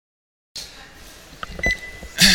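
A lecture-room microphone's steady hiss and room noise starting half a second in, with a couple of soft knocks and then a brief, faint high beep near the end.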